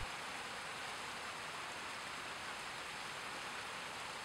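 Faint, steady hiss with a thin, high, constant whine and nothing else: background noise in a pause of the track.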